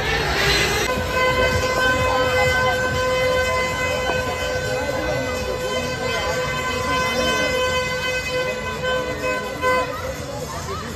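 A long, steady horn tone starting about a second in and held unbroken for about nine seconds, over crowd noise.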